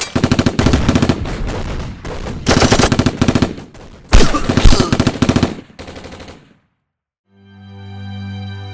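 Machine-gun fire sound effects in rapid bursts, with two heavy booms about four seconds in. The firing stops at about six and a half seconds, and after a short silence music begins near the end.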